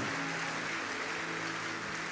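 Soft background music: a held, steady chord sustained over the even hiss of a large congregation in a hall.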